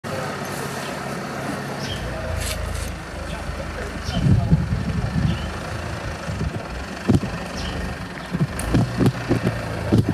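Forklift engine running with a steady low drone that sets in about two seconds in, with people talking over it.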